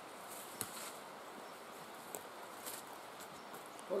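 Faint footsteps through forest undergrowth: a few soft crackles and rustles of brush and twigs underfoot over a quiet outdoor background.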